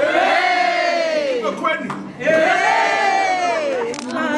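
A group of people cheering in two long drawn-out shouts that rise and then fall in pitch, with a few short calls in between.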